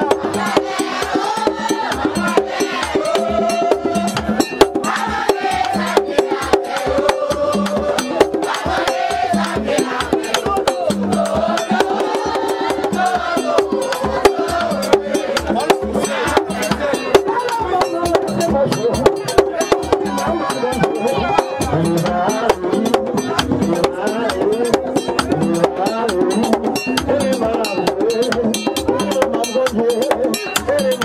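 Haitian Vodou ceremonial music: drums and rattles beating a fast, steady rhythm under several voices singing.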